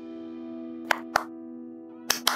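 Background score holding a steady sustained chord, with two short plops about a second in.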